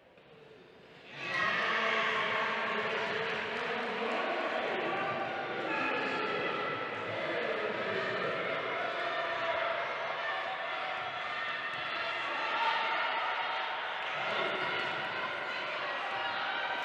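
Indoor wheelchair basketball game sound: a basketball bouncing on the sports-hall floor under many overlapping voices calling out, cutting in suddenly about a second in after near silence.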